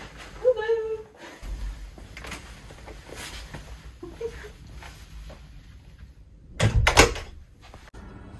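A hotel room door closing with a loud clunk about seven seconds in, after low handling noise as it is opened and gone through.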